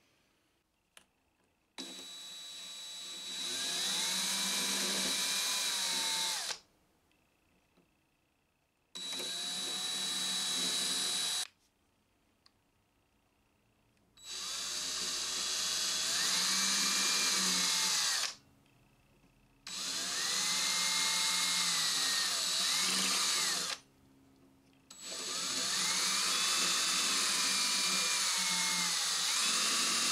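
Small electric drill with a thin bit boring holes through a guitar's rosewood fretboard into the neck's dovetail joint, to find the joint's pocket for a neck reset. It runs in five bursts of a few seconds each with short pauses between, the motor pitch rising as it spins up and falling as each run stops.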